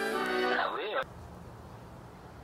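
Background music with sustained notes, joined by a short cat meow that rises and falls in pitch about half a second in. Both stop abruptly about a second in, leaving only faint background noise.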